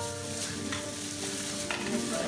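Steel chains dragging and rattling across the floor in a continuous metallic scrape, with music of held notes playing underneath. A single sharp knock near the end.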